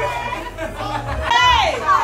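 Excited women's voices and chatter, with a high-pitched squeal that rises and falls a little past halfway.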